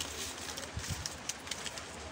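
Brown paper pattern pieces rustling and crinkling with small taps as they are rolled up and handled on a wooden table, with a couple of soft bumps about a second in.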